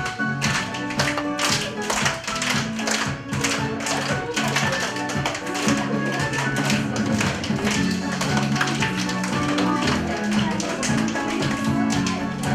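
Children's dance music playing with a fast run of hand claps over it, as children clap their hands and their partners' palms in time.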